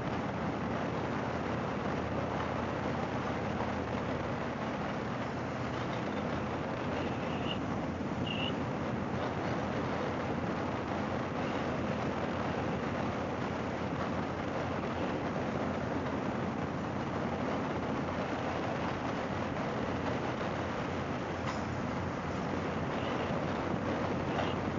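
Harley-Davidson Fat Boy's V-twin engine running steadily at cruising speed, under a constant rush of wind and road noise.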